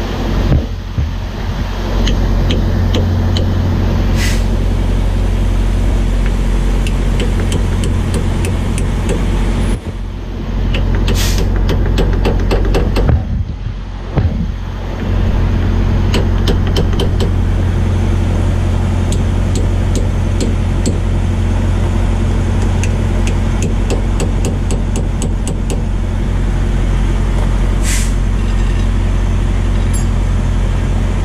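Diesel truck engine idling steadily, over which a hammer strikes the broken driveshaft stub at the differential in quick runs of sharp metallic taps, with a few louder single hits.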